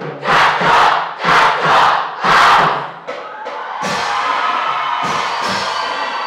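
School marching band opening its show: four loud group shouts in unison over heavy drum hits, then the band's horns come in holding a sustained chord with bass drum strokes about a second apart.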